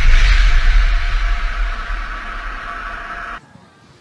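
Cinematic logo-sting sound effect: a deep impact boom at the start with a rumbling, hissing tail that fades over about three seconds, then cuts off abruptly.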